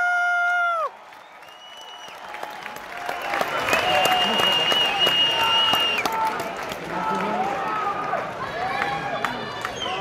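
Fight-night crowd cheering and applauding: a long held shout cuts off about a second in, then clapping and scattered shouts build back up, with a steady high held note for about two seconds in the middle.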